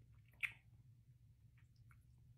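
Near silence, with one short wet mouth click about half a second in and two fainter ones near the end: lips and tongue smacking while tasting a sip of whiskey.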